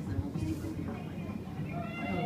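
Indistinct voices in a room.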